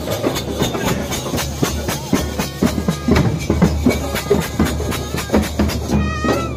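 A street procession band playing fast, loud folk music: rapid drumming dominates, with clarinet and trumpet carrying the tune.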